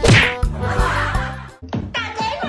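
A loud, sharp slap on a forehead: a single whack with a quick falling swoop, trailing off into a noisy wash that cuts off suddenly about a second and a half in.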